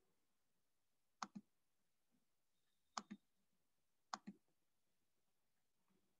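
Computer mouse clicking: three quick double clicks spread a second or two apart, over near silence.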